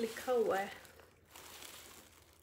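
A woman's brief voiced sound, then faint rustling as a handbag is handled and held open by its zip.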